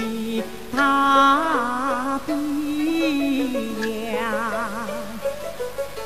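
Xiju (Wuxi opera) aria music: long, ornamented melodic phrases on sustained held notes, with a wide, wavering vibrato near the end.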